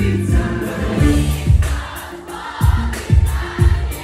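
Live concert music played over the PA: singing over a heavy bass-drum beat.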